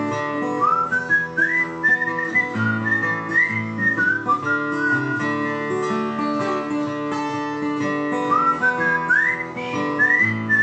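Acoustic guitar strummed in a steady chord pattern, with a person whistling a melody over it. The whistled tune comes in two phrases: one from about a second in to nearly halfway, and another starting near the end.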